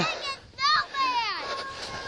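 Children shouting and squealing at play, with one long, high, falling squeal about a second in.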